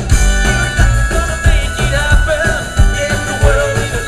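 Live band playing a bluegrass-flavoured rock song, loud, with keyboard, a steady driving beat and a wavering lead melody line over it.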